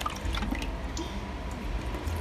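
Water sloshing and dripping as a small plastic scoop is dipped into a plastic bucket of water and lifted out, with a few small drips and clicks.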